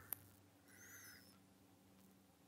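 Near silence, with one faint, high, wavering bird chirp about a second in.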